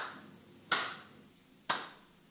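Three sharp knocks about a second apart, each ringing briefly in a reverberant hall.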